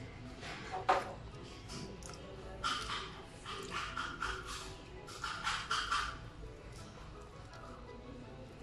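Background music, over which a cleaver scrapes the fibrous flesh off a halved cempedak and rustles a plastic bag. There is one short scrape about a second in and a cluster of louder scrapes between about three and six seconds in.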